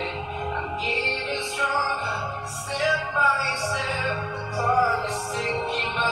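Electronic dance music with sung vocals over a steady bass, streamed from a phone through a Bluetooth audio receiver and played on Panasonic home stereo speakers.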